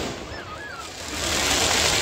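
Ground firework fountains spraying sparks: a hissing crackle that swells about halfway through.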